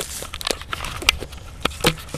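Leaf bonfire crackling, with several sharp pops over a low rustle.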